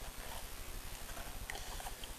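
Faint handling noise: a few light clicks over a low, steady hum.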